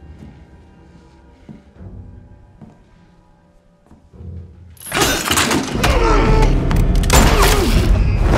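Film soundtrack: a quiet, tense music score with a few soft knocks. About five seconds in comes a sudden loud crash, and a loud, chaotic scuffle with impacts follows under the music.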